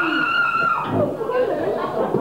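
A performer's voice through the stage PA, holding one long high note for about the first second, then breaking into shorter, uneven vocal sounds.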